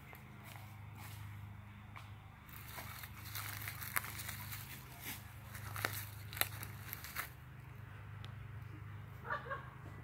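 Footsteps crunching and crackling on dry fallen leaves, faint against a steady low hum, with scattered crackles through the middle. Near the end comes a brief high-pitched cry.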